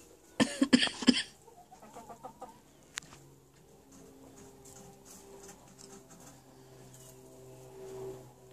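Hens in a nest barrel, making a few soft clucks and then a low, steady murmur. A few loud rustles or knocks come in the first second.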